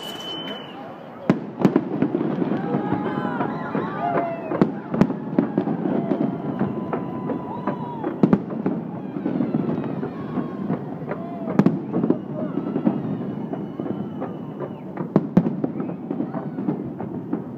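Fireworks shells bursting in a dense, irregular series of sharp bangs that begins about a second in, with louder reports standing out about every three seconds over a constant crackling din.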